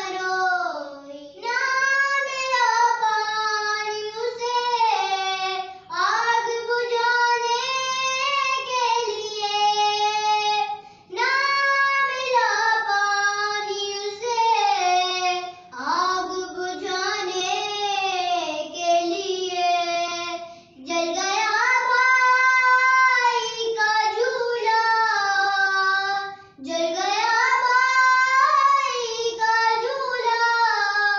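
A young girl singing a noha, a Muharram lament, unaccompanied, in long held phrases with short breaks for breath about every five seconds.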